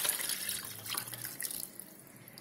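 Rasam being poured from a plastic shaker into a bowl that already holds liquid: a splashing pour that fades away through the second half.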